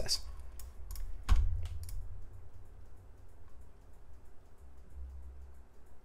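Clicks and taps of a computer keyboard and mouse, a quick cluster in the first two seconds with one louder knock a little over a second in, then only faint scattered ticks.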